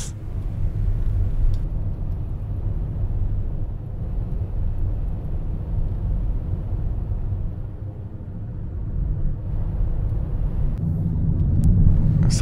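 Road and engine noise inside a moving car's cabin: a steady low rumble from the tyres and drivetrain while cruising on an open road, dipping slightly and swelling again about two-thirds of the way through.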